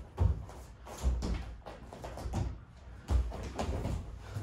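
Dull thuds and scuffing of wrestlers' feet, knees and bodies moving on foam wrestling mats during a single-leg drill: several separate thumps, one just after the start, one about a second in, and two about three seconds in.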